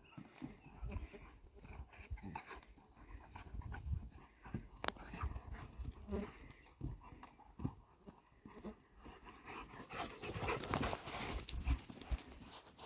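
Two large dogs play-fighting: scuffling and thudding paws on sandy dirt, with growls and panting. The noise is busiest and loudest near the end.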